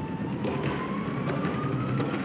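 Electric skateboard rolling over rough concrete close by: a steady rumble of the wheels on the surface, with the electric motor's whine rising slowly in pitch as the board picks up speed.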